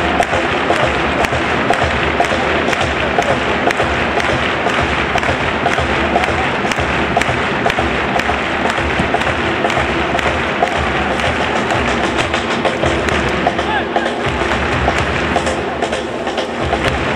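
Football stadium crowd with supporters keeping a steady beat of claps and drums, about two a second, over a constant murmur of voices.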